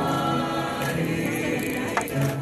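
A choir singing in long held notes.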